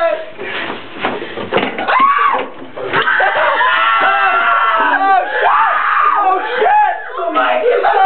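Several people shouting and screaming over one another in excitement and alarm, with a few knocks among the voices.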